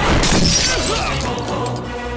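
Dramatic action-film background score with a loud crash-and-shatter impact effect at the very start, its bright breaking noise dying away within about half a second while the music carries on.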